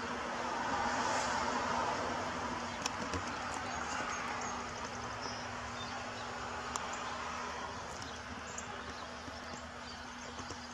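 Steady outdoor background rush with a low steady hum and a few faint clicks, easing slightly toward the end.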